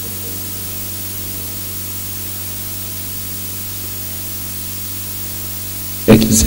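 Steady hiss with a low electrical hum, the noise floor of the microphone and recording chain, with no other sound over it.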